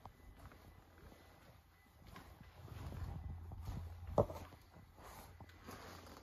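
Faint footsteps on a hard tiled floor as someone walks, with low handling rumble in the middle and one sharper knock about four seconds in.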